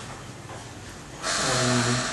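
Quiet room tone. Past the middle, a low, breathy vocal sound from a person starts and is held.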